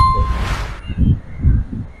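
A bell-like ding sound effect, matching an animated notification-bell graphic, rings out and ends just after the start, followed by a short whoosh about half a second in. Then only a low rumble, like wind or handling on the microphone.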